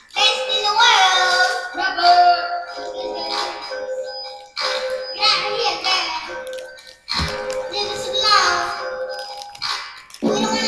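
A song: a high-pitched voice sings in short phrases of a second or two, with brief breaks between them, over a steady held tone.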